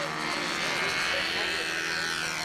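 Twin small model-aircraft engines on a four-wing control-line model, running steadily at high speed as the model circles.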